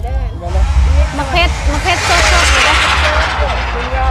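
Voices chattering over background music with a heavy bass throb. About two seconds in, a loud hissing rush swells up and fades again over about a second and a half.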